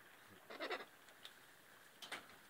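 A pet parrot gives one short, harsh squawk about half a second in.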